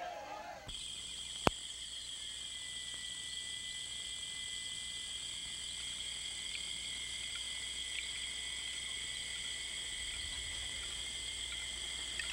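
Steady, high-pitched chorus of insects, cricket-like, starting abruptly about a second in and running on without a break. One sharp click sounds shortly after it begins.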